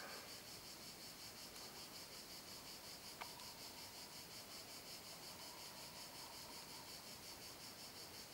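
Faint, steady chirping of crickets, a high, evenly pulsing insect chorus, with a single small click about three seconds in.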